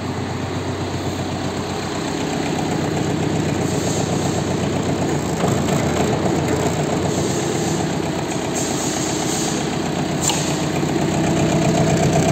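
Mitsubishi MT-21D mini tractor's 21 hp four-cylinder diesel engine running steadily, growing a little louder a few seconds in, with a short click about ten seconds in.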